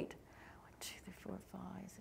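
Faint, low speech off the microphone, with a brief soft hiss like an "s" about a second in.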